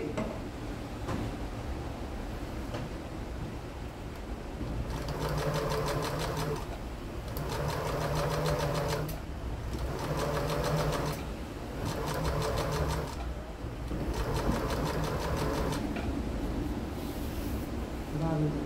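Electric household sewing machine stitching curtain fabric in five short runs of about a second and a half each, with brief pauses between them. The first run starts about five seconds in.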